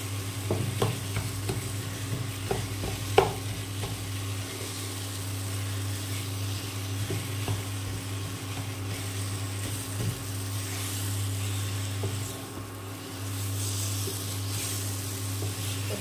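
Wooden spatula stirring and scraping a sticky date and fig mixture in a nonstick pan, with a light sizzle as it cooks. Scattered knocks of the spatula against the pan come in the first few seconds, the loudest about three seconds in, over a steady low hum.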